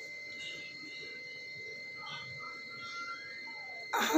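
Faint sizzling of whole spices, onion and turmeric frying in hot oil in a wok, under a steady faint high-pitched whine.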